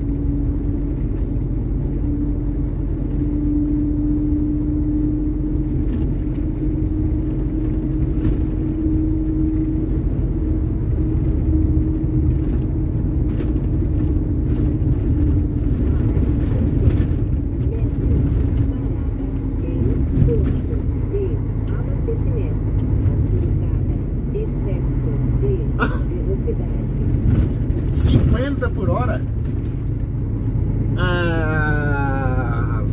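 Truck cab interior while driving on the highway: steady engine and road rumble, with a steady mid-pitched drone that is strongest through the first ten seconds or so and then fades.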